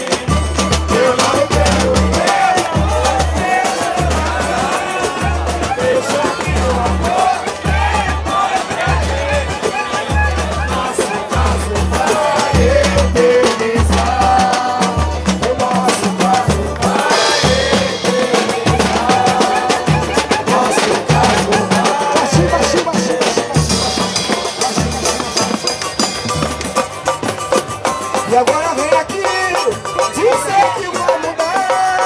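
Live roda de samba: a large hand drum (tantan) keeping a steady low beat, pandeiros, cavaquinho and banjo playing together, with voices singing over them.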